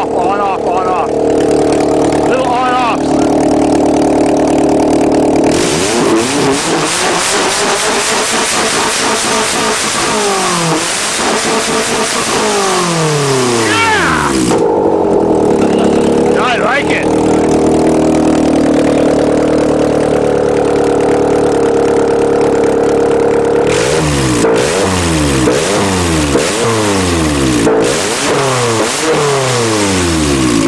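Nissan 200SX engine running through a hood-mounted 'fart cannon' exhaust: idling, then blipped up and down over and over for several seconds about five seconds in, settling back to idle, and revved again in a second run near the end. The revs come with a loud raspy exhaust note.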